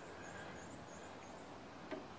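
Quiet room tone with a faint, high wavering sound in the first half and a single small click near the end.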